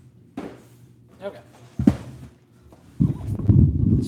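Close handling noise: a sharp knock a little under two seconds in, then about a second of loud, dense rumbling and scraping as a large cardboard box is moved into place right in front of the recording phone.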